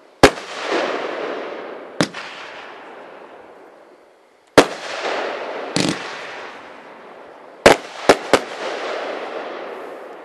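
Aerial shells from a 500-gram consumer fireworks cake bursting in the sky, each sharp bang followed by a crackling sizzle that fades away. About four single bursts a second or two apart, then three bangs in quick succession near the end.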